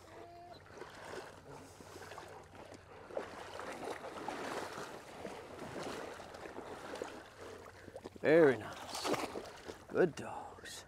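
Water sloshing and swishing as a person wades through knee- to thigh-deep water and retrievers swim alongside. A brief voice-like call sounds once about eight seconds in.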